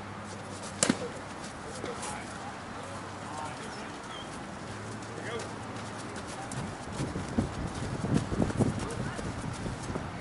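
A softball bat strikes the ball once about a second in: a single sharp crack, the loudest sound here. Faint distant voices of players follow, and a run of low thumps comes near the end.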